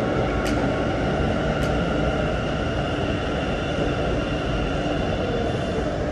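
Namma Metro train standing at the platform, giving a steady mechanical hum with several steady high tones running through it. Two sharp clicks come in the first two seconds.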